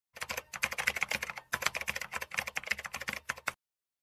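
Rapid keyboard-typing sound effect: a dense run of quick clicks, with a brief break about a second and a half in, stopping abruptly half a second before the end.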